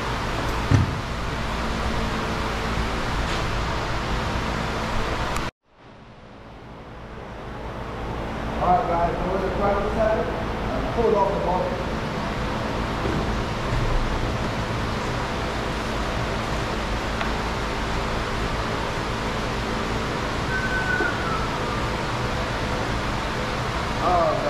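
Steady hum of a large wall-mounted shop fan with workshop room noise. It cuts out abruptly about five seconds in and fades back up over the next few seconds. Faint voices come through around ten seconds in.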